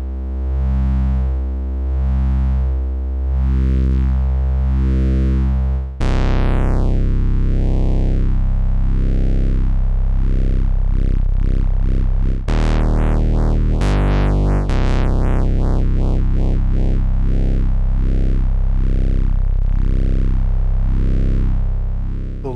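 Sustained bass synthesizer notes played through a Doepfer A-106-6 XP filter in notch mode, its cutoff swept up and down by a sine LFO so that a narrow band of harmonics is cut out in a wavering, repeating sweep. New notes come in about six seconds in and again around twelve to fourteen seconds, and the speed of the sweep changes as the LFO is adjusted.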